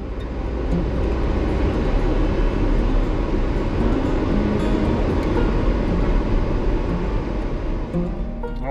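A Jeep being driven on a road, giving steady road, engine and wind noise that builds about a second in.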